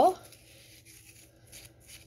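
Faint rubbing as a wooden popsicle stick pushes a soft baking soda and conditioner mixture down into the neck of a latex balloon, a little louder about one and a half seconds in.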